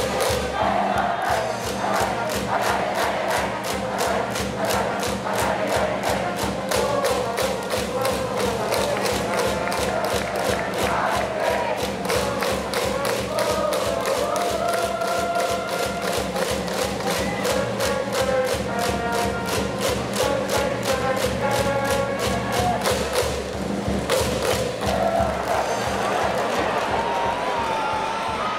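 A school cheering section at a high school baseball game: a band plays a cheering tune over a steady drum beat, with the crowd chanting along.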